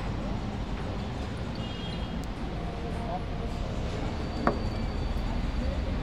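Street ambience: a steady low traffic rumble with faint distant voices, and a single sharp click about four and a half seconds in.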